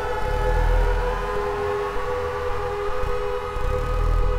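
SOMA Lyra-8 analog synthesizer droning: two steady tones hold underneath while one voice slides slowly upward in pitch as its tune knob is turned, then levels off, over a pulsing low rumble.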